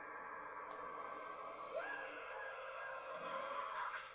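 Sustained droning film soundtrack from a horror movie, a steady low-key drone of held tones that swells about two seconds in and cuts off suddenly at the end.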